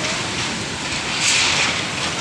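Typhoon wind and heavy rain: a steady rushing noise that swells in a stronger gust a little past a second in.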